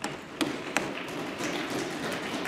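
Debating-chamber background noise: a steady murmur from the floor with many scattered small taps and knocks, as of members moving papers and things at their desks.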